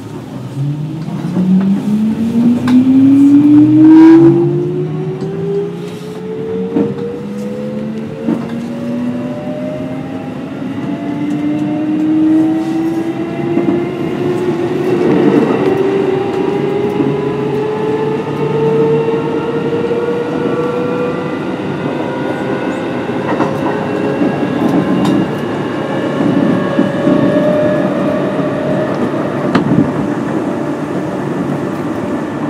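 Kintetsu 8800 series electric train pulling away and accelerating. Its traction motors and gears whine, rising steeply in pitch over the first few seconds and then climbing more slowly as speed builds. Short clicks of wheels over rail joints run underneath, with a louder stretch around four seconds in.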